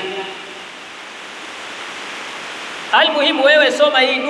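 A steady, even hiss fills a pause in a man's speech into a microphone, and his voice resumes about three seconds in.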